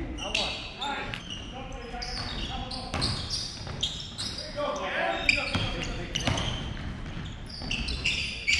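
Basketball bouncing on a hardwood gym floor during a live game, with repeated short knocks and high short squeals of sneakers on the court.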